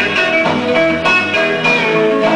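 Rockabilly record playing from a 7-inch single on a turntable: an instrumental break without vocals, led by guitar playing quick single notes.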